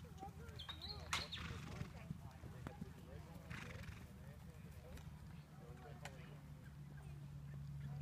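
A pony cantering on grass: faint hoofbeats, with voices murmuring in the background and a sharp knock about a second in.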